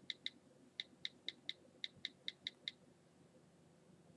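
Faint, crisp key clicks from an iPod touch's on-screen keyboard as the digits of a phone number are tapped in. There are about a dozen clicks in three quick runs, and they stop a little under three seconds in.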